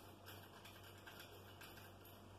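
Near silence with a few faint ticks and rustles: hands handling the white antenna tube and the metal mounting clamp being fitted to its base.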